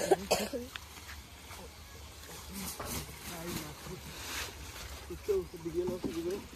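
Men's voices talking indistinctly over splashing water as a seine net is dragged through a shallow muddy pond. There is a loud, short noisy burst at the very start, and softer splashes a few seconds in.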